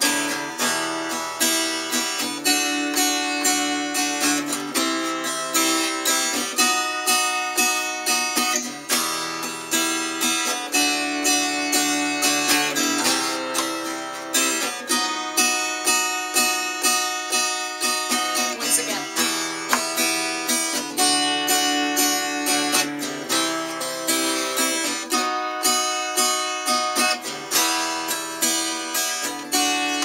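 Stagg steel-string acoustic guitar strummed in a steady, even pattern, the chord changing every second or two.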